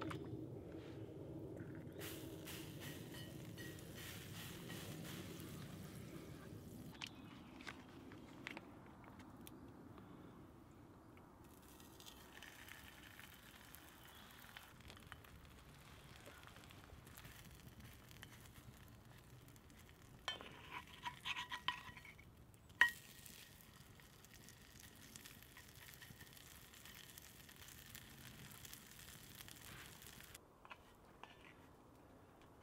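Tofu steak frying faintly in an oiled cast iron skillet over a campfire, with small crackles. About twenty seconds in come a few ringing clinks against the pan, ending in one sharp knock, the loudest sound.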